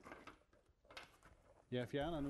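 Faint clicks and rustling of gloved hands handling a voltage test probe and its lead. A man's voice starts near the end.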